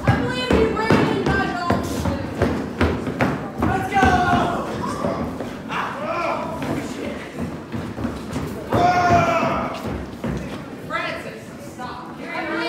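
Many feet stamping and shuffling on a wooden floor as a circle of boys pulls and steps around, with repeated thuds. Boys' voices shout over it, loudest about four seconds in and again about nine seconds in.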